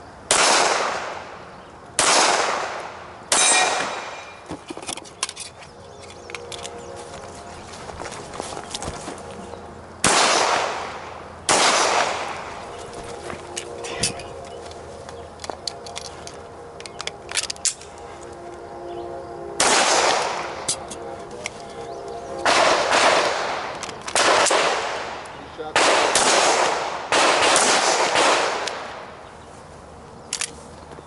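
Semi-automatic pistol shots: about a dozen sharp cracks, each with a long echoing tail. They come in groups, three near the start, two about ten seconds in, then a quicker string of about seven in the last third, with pauses of several seconds between the groups.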